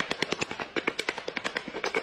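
Rapid tapping of a hand-held block on a large floor tile, about ten to twelve quick knocks a second, as the tile is bedded down into its adhesive.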